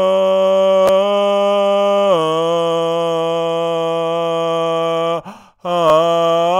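A man singing an improvised wordless chant in long held vowel notes, stepping down to a lower note about two seconds in, with a short break for breath near the end before the next note.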